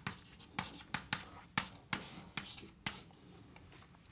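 Chalk writing on a blackboard: a quick run of sharp taps and short scraping strokes, thinning out in the last second.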